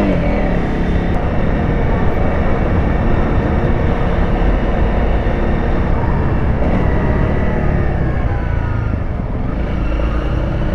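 Honda CRF300L single-cylinder dual-sport motorcycle engine running as the bike rides through city traffic. It runs steadily and loudly, with the pitch easing down slightly near the end.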